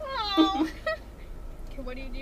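A woman's high-pitched squeal that slides down in pitch over about half a second, followed by quieter laughing voices.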